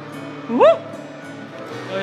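Background music with one short, loud yelp about half a second in, its pitch rising and then falling.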